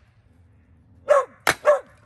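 A dog barks twice, and between the barks a hammer strikes a log sitting in a kindling splitter once, a single sharp crack about a second and a half in.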